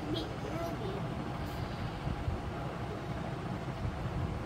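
Steady low background rumble, with a faint voice wavering in pitch during the first second.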